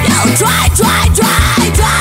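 Punk rock song playing: distorted electric guitars over a fast, steady drum beat.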